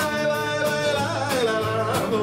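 A man singing with an acoustic guitar strummed along, his voice holding long, wavering notes.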